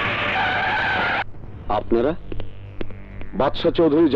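Car tyres screeching as a minivan skids, a loud squeal that cuts off sharply about a second in, followed by short bursts of speech.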